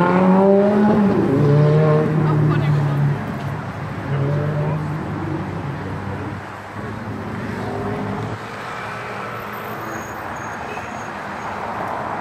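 Road traffic: a motor vehicle engine rising in pitch as it speeds up, then holding a steady note for about two seconds, breaking off and returning briefly. Fainter, steady traffic noise follows.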